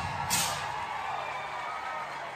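Drum kit with the band: a cymbal struck about a third of a second in and left ringing under held notes that slowly fade away.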